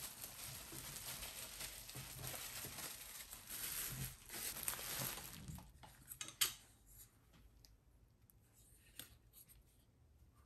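Plastic bubble wrap rustling and crinkling as a small framed picture is slid out of it, for about six seconds. A single sharp click follows, then only faint handling ticks.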